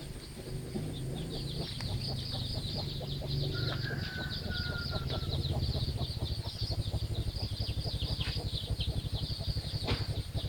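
Chicks peeping rapidly and without a break, with one drawn-out falling call about three and a half seconds in. A low, fast pulsing rumble comes in from about halfway.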